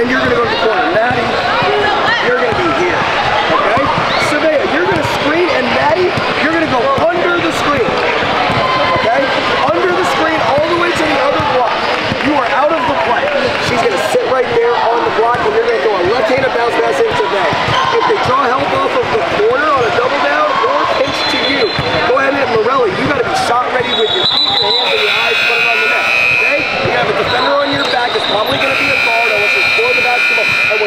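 Basketball gym ambience: many overlapping voices and basketballs bouncing on the hardwood court. A steady buzzer sounds twice near the end.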